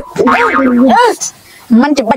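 Comedy "boing" sound effect about a second long, holding one pitch and then swooping up at the end.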